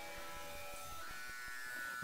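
A faint, steady buzzing hum with several steady tones, heard in a pause between spoken words.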